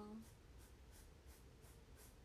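Faint, rhythmic scratching of pen strokes, about three a second, as a drawing is coloured in.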